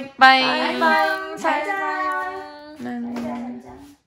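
A woman singing a playful chant of repeated syllables in a high, childlike voice, holding long notes with short breaks between them.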